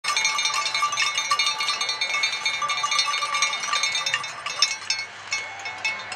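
Many hand-shaken cowbells clanging rapidly together, a dense metallic ringing that thins out and gets quieter near the end.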